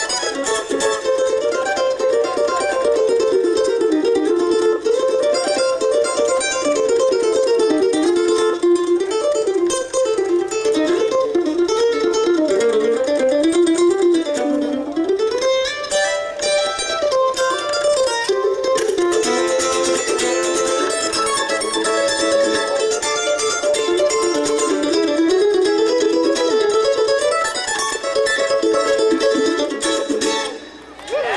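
Two mandolins playing an instrumental bluegrass tune together live, a busy picked melody with no singing.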